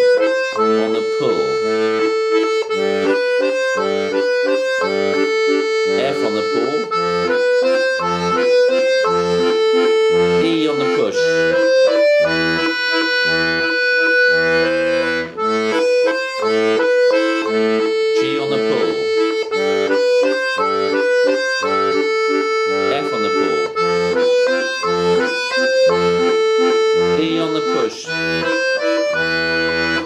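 Diatonic button accordion (melodeon) playing a waltz tune: the right-hand melody over left-hand bass and chord buttons, using the bellows in both push and pull.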